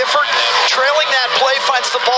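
Speech: a sports commentator calling the goal over the broadcast.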